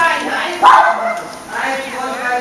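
People talking, with a dog giving one loud, short bark about two-thirds of a second in.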